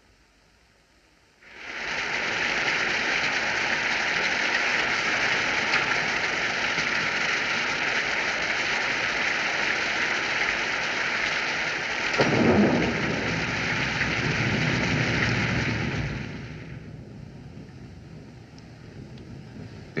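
Rain and thunder sound effect on an old film soundtrack. After a short silence, steady heavy rain comes in. A rumble of thunder swells and peaks about two-thirds of the way through, and then the rain fades down.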